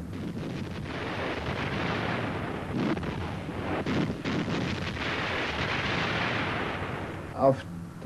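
Battle sound effects of artillery fire and gunfire: a continuous rushing noise that swells and then fades, with several sharp shots about three to four seconds in.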